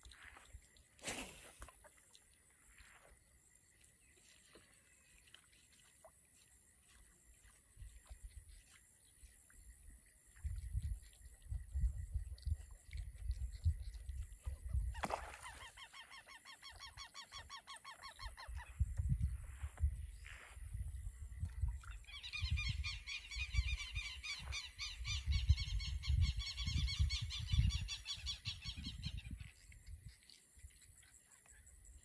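Birds giving loud, rapid honking calls, a short bout near the middle and a longer run in the last third, over gusts of wind on the microphone.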